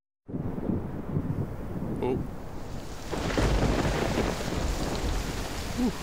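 Coffee-machine noise, a steady rumbling hiss like milk being steamed for a latte. It starts suddenly and grows louder about three seconds in. A short cartoon voice says "oh" about two seconds in.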